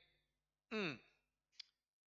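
A man's short, sigh-like vocal sound with falling pitch, lasting about a third of a second, followed by a brief faint breath about a second and a half in.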